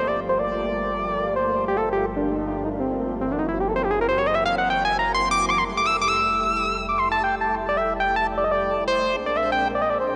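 Yamaha Genos arranger keyboard playing an 80s-style synth voice, its pitch bent with the joystick. The notes glide smoothly upward about three seconds in, hold, then drop back down around seven seconds, over sustained chords.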